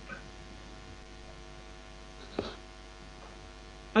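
A pause in the talk, filled by a steady electrical hum on the recording, with one short faint click about halfway through.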